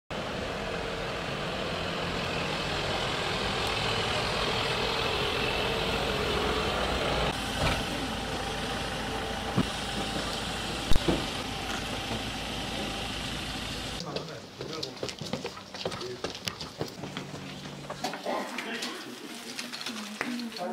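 Street sound with a vehicle engine running and a few sharp knocks. After a cut about 14 s in, a quieter room with crackling and rustling as plastic bags are handled, and voices in the background.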